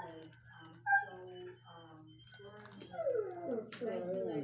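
A dog whining in a string of short, high cries, then longer wavering, falling howl-like cries near the end.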